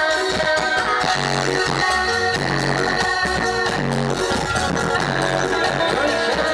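A live band playing an instrumental passage: an electronic keyboard (Korg) carries held notes and a melody over a repeating bass-guitar line and steady drums and percussion.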